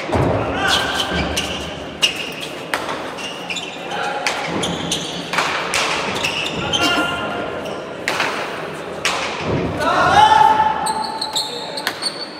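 A pelota rally in an echoing hall: the hard ball smacking off bare hands and the walls every second or so. Voices call out through the rally, with a loud drawn-out shout about ten seconds in.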